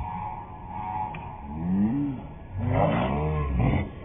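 A man laughing hard in long, wailing, rising-and-falling cries, with no words.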